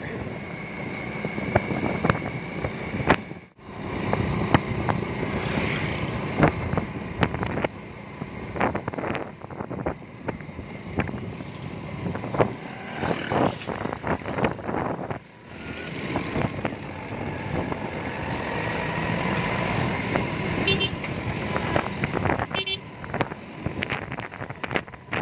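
Motorcycle ride recorded from the bike: the engine running under wind on the microphone, with frequent knocks and rattles over the rough road. The sound dips out briefly twice.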